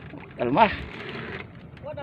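A person's short drawn-out vocal call about half a second in, its pitch rising and then falling, over a faint steady background noise; a few faint voice sounds follow near the end.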